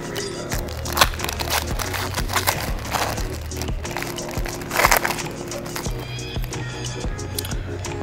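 Background music with a steady beat, over which the shiny wrapper of a trading-card pack crinkles and tears in short bursts, once about a second in and again around five seconds in, as the pack is opened.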